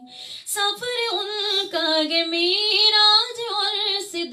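A woman singing a naat without accompaniment into a microphone: long held notes with vibrato, coming in after a brief pause about half a second in.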